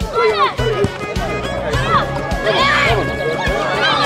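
Music with a steady bass line and voices over it.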